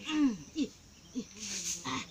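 A few short vocal sounds, each falling in pitch: a longer one at the start, two brief ones in the middle and another near the end.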